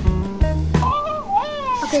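Background music with steady notes and a beat that cuts off about a second in, followed by a high-pitched, sliding cry like a cat's meow.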